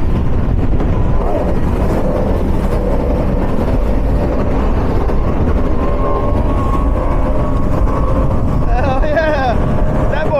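Powerboat outboard engines running at high speed with the rush of wind and water, a steady, dense roar whose engine pitch rises slightly midway. A voice calls out near the end.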